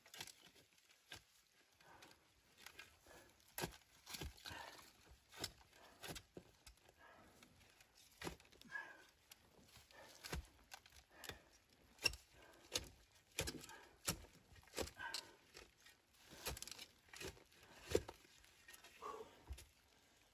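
Steel shovel digging into soft earth and root-bound soil: irregular scrapes, chops and thuds as the blade is driven in and soil is lifted.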